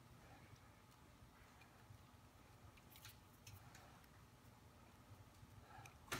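Near silence: room tone with a few faint small ticks, typical of fingers handling and bending a thin cable drain wire.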